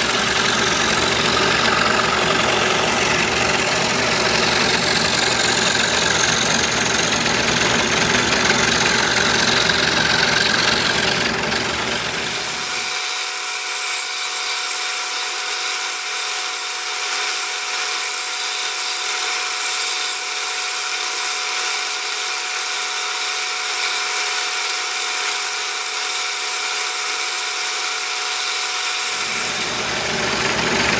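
Scroll saw running steadily, its No. 5 reverse-tooth blade cutting through a tape-covered plywood blank. About 13 seconds in, the sound abruptly loses its low rumble and the saw carries on.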